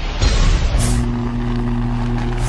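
Sound effects for an animated logo reveal: a rise about a quarter second in, then a steady low hum over a deep rumble. Hissing swells come in at about one second and again near the end.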